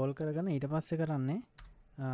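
Computer keyboard typing: a few keystrokes near the end, after a stretch of speech.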